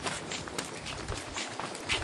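Footsteps of people walking at an even pace on a concrete path, over a faint rustling background; the loudest step comes near the end.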